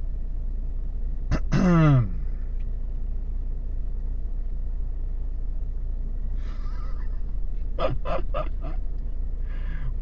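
Steady low rumble in a Volvo V40's cabin. About a second and a half in, a man gives a short groan falling in pitch, and a few quick clicks come near the end.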